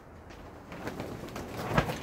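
Metal clicks and knocks of chuck wrenches working the jaw screws of a four-jaw lathe chuck as the jaws are backed off, getting louder toward the end.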